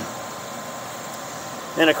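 Electric fan on a 208-volt circuit running steadily, a constant rush of air noise. A throat clear near the end.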